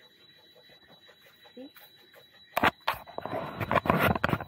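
Knocks and rustling from a handheld camera being handled and swung around, starting about two and a half seconds in, over a faint steady high-pitched whine.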